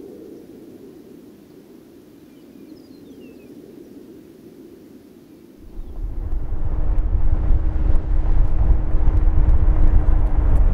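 A faint low hum at first. About six seconds in, the loud low rumble of a vehicle driving begins, with a steady drone and small rattling ticks over it.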